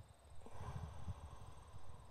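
Wind buffeting the microphone: a low, irregular rumble that starts about half a second in.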